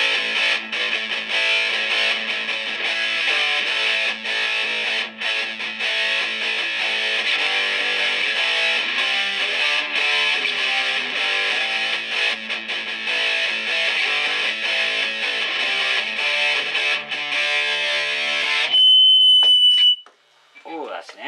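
Electric guitar played through the Boss ME-80's high-gain distortion, a dense stretch of chords and notes. Near the end the playing stops and a loud, steady high-pitched squeal of feedback holds for the last second or so.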